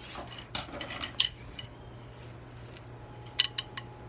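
Metal objects clinking and clanking: a few light strikes with brief ringing about a second in, then a quick run of four near the end.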